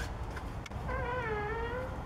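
Front door swinging open: a faint click from the latch, then the hinge squeaking for about a second as one wavering tone.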